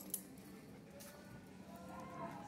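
Quiet room tone: a steady low hum, with a short light click just after the start and a fainter one about a second in.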